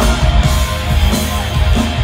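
Live rock band playing loud through a festival PA, heard from within the crowd: electric guitar, bass and drums.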